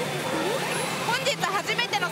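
Pachinko machine playing a character's voice line and effects, heard over the steady din of a pachinko parlour.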